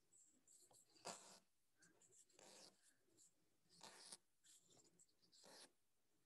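Near silence, with four faint, brief rustles of a cotton bandana being handled.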